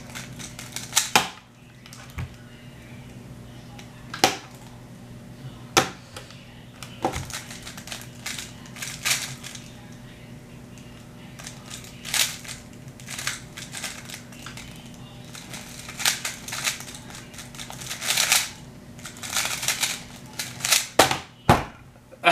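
Plastic 3x3 speedcube being turned fast in a speed solve: quick clacks and rattles of the layers in irregular bursts, with a cluster of louder clacks near the end. A low steady hum runs underneath.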